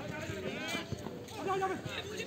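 Players' voices calling out across a football pitch during play, with a few short knocks about halfway through.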